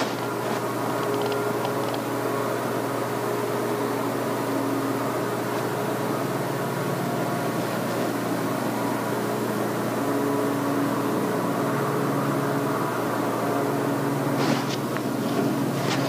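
Steady mechanical room hum, an even drone carrying a few low steady tones, with a couple of faint clicks near the end.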